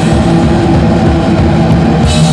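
Crust punk band playing live: loud, dense distorted guitar and bass with drums, the cymbal wash dropping out for this stretch.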